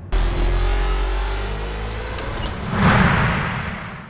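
Transition sound effect for a TV news logo animation: a sudden deep rumble with a tone rising slowly beneath it, swelling into a whoosh about three seconds in, then fading away.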